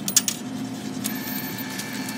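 Bill acceptor of a ticket vending machine taking in a dollar bill: a few sharp clicks as the bill is pushed into the slot, then from about a second in a steady high whirr of the mechanism drawing the bill in.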